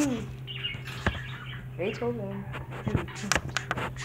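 A pet bird making short rising-and-falling calls, with scattered sharp clicks, over a steady low hum.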